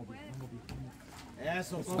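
Only voices: faint calls from onlookers, then a man's speech rising near the end.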